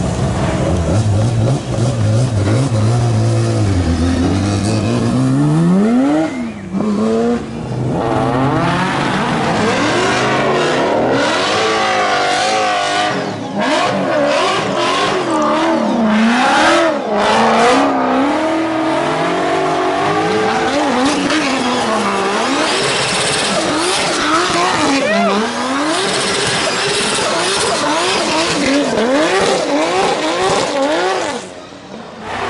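Race car engines at full throttle through a hairpin: one engine pulls away, rising steadily in pitch over the first few seconds, then a Ford Mustang drift car revs hard up and down again and again as it slides through the corner, with tyre squeal.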